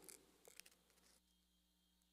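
Near silence: faint room tone with a few soft clicks about half a second in.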